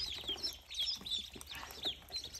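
A brooder of about thirty ducklings peeping: many short, high calls that fall in pitch, overlapping in a steady chorus.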